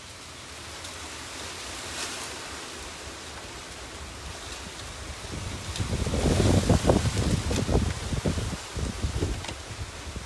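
Wind noise on the microphone, with a stronger, rumbling gust from about six to nine seconds in.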